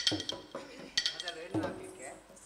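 Small bronze hand cymbals (tala) struck in a steady beat, about once a second, each clash ringing briefly.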